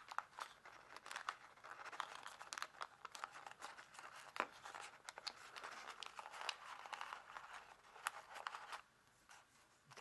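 Sheet of kami origami paper rustling and crinkling under the fingers as a curved fold is pressed in, with many small sharp crackles. It goes quiet about a second before the end.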